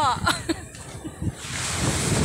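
Ocean surf washing up the beach, with wind on the phone microphone; the rush of the waves swells up about one and a half seconds in and holds steady.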